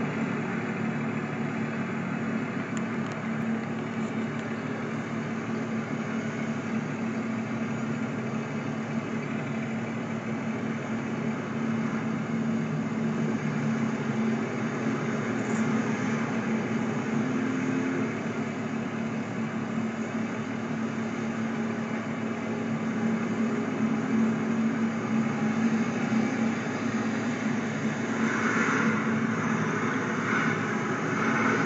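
A steady engine hum with road traffic going by on a town street, growing a little louder near the end.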